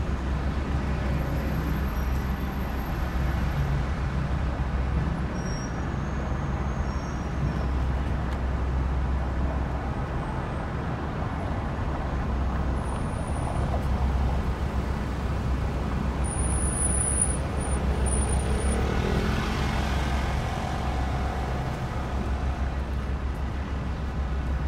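Steady city road traffic: cars, vans and motorbikes passing on a busy street, with a deep, continuous rumble. One vehicle swells past about three quarters of the way through, and a few brief, faint high squeals come and go.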